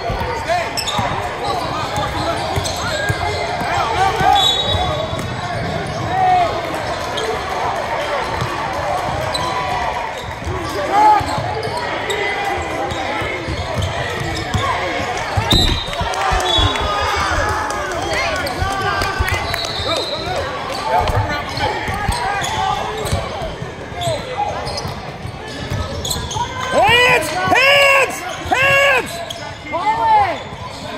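Basketball game in a large gym: a ball dribbling on the hardwood court and voices calling out, echoing in the hall. Near the end come a few short, high squeaks from players' sneakers on the court.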